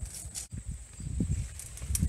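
Rustling of leaves and branches as a person pushes into a leafy shrub, with soft steps on grass, over a low, uneven rumble. There are short rustles just after the start and again near the end.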